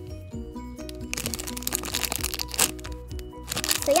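Clear plastic wrapper around a squishy toy bread roll crinkling and crackling as it is handled, mostly through the middle, over background music with a simple stepping melody.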